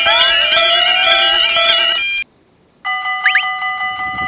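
Several railroad crossing alarms sounding at once, a mix of steady electronic tones and warbling, with sliding tones over them; they cut off about two seconds in. After a brief silence a different set of steady crossing alarm tones starts, with two quick rising glides.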